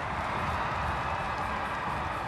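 Steady crowd noise in a football stadium just after a goal, an even wash of sound with no clear rise or break.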